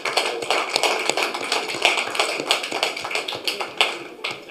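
A room of people applauding, a dense, irregular run of claps and taps on the tables that thins out near the end.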